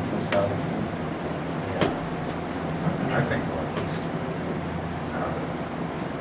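Indistinct, low talk over a steady low hum of room noise, with a single light knock a little under two seconds in.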